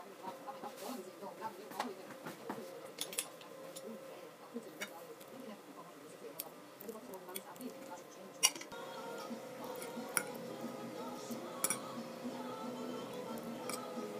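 Knife and fork clinking against a ceramic plate while cutting beef: a few scattered clinks, the sharpest one about eight and a half seconds in.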